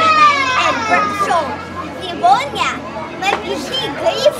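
A young boy's high voice laughing and making wordless sounds: a long falling cry, then several short rising squeaks.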